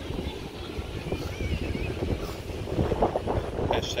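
Wind buffeting the phone's microphone, a steady low rumble with gusts.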